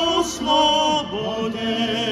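Two men singing a Moravian folk song together into a microphone, holding loud notes with vibrato in the first second before the voices fall to lower gliding notes, over steady instrumental accompaniment.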